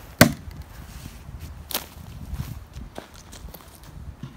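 Hatchet chopping into a wooden log: one sharp, loud strike about a quarter second in, then a second, lighter strike a little under two seconds in.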